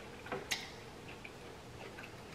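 Quiet close-up eating sounds: a few soft mouth clicks from chewing, with one sharper click about half a second in.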